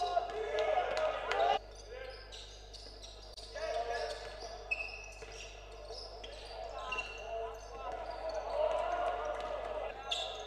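Live game sound of a basketball being dribbled on a hardwood court, with scattered shouts and voices ringing in a sports hall. The sound changes abruptly about a second and a half in, where one clip cuts to another.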